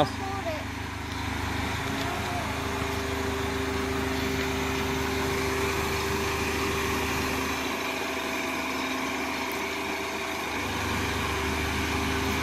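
Steady engine hum of a Jeep Renegade Trailhawk running as it creeps backwards down the steel ramp of a car-transporter truck.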